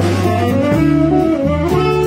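Live jazz quartet playing: a saxophone melody over hollow-body electric guitar, walking double bass and a drum kit with cymbal strokes.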